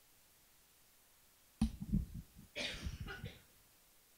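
An audience microphone being switched on and handled as it cuts in and out: a sudden sharp thump about a second and a half in, then about a second of rough scuffing handling noise.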